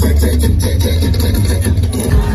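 Loud live concert music over a stadium sound system, with a heavy, held bass line under a repeating melodic pattern.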